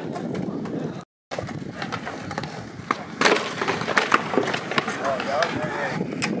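Pro scooter's wheels rolling over a concrete skatepark, a steady rumbling hiss with a sharp clack about three seconds in as the scooter strikes the concrete. The sound cuts out briefly about a second in.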